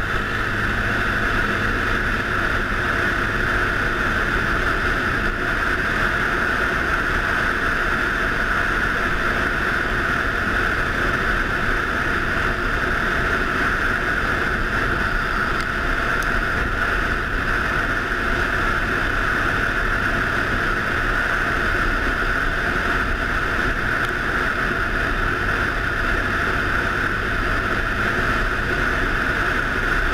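ATV engine running steadily at cruising speed, with tyres on a gravel trail and wind noise on the microphone.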